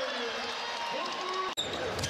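Basketball arena sound: crowd noise and voices after a made three, broken by a sudden cut about one and a half seconds in. After the cut the arena ambience resumes with a basketball being dribbled on a hardwood court.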